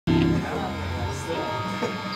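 A band's amplified instruments on stage: a low note right at the start that fades within half a second, then a steady amplifier hum with faint playing and background voices.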